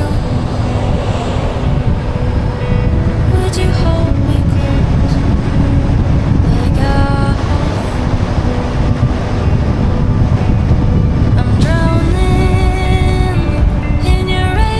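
A car driving along at a steady pace: an even, loud low rumble of tyres and engine on the road. Music with melodic lines comes and goes over it, clearest near the end.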